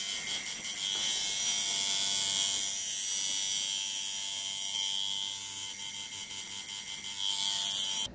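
Coil tattoo machine buzzing steadily as it works ink into skin, its buzz wavering and stuttering about two-thirds of the way in.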